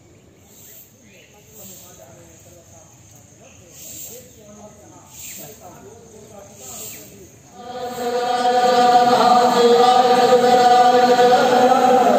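A faint murmur of voices with a high chirp repeating about once a second, then, about eight seconds in, loud, steady chanting of a mantra by a group of voices begins.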